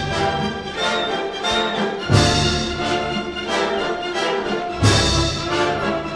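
Opera orchestra playing dance music, brass and strings together, with heavy accented strikes about two seconds in and again near five seconds.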